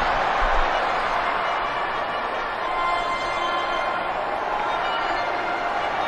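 Large stadium crowd noise: a steady wash of many voices from the packed stands, heard from the TV broadcast being played back.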